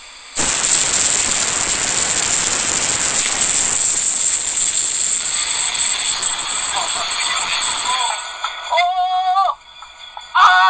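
Loud, steady rushing of earthquake-shaken water, sloshing out of a rooftop swimming pool and pouring off a high-rise. It starts suddenly about half a second in and fades near the end, when a voice is briefly heard.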